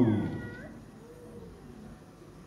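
A man's chanted phrase trails off in the first half second with a thin, falling, gliding note. Then there is quiet hall room tone.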